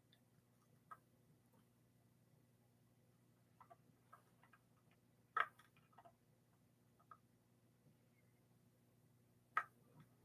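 Near silence with a few small clicks and taps from hands and a soldering iron working a ground wire onto the back of a guitar volume pot, the sharpest about halfway through and another near the end.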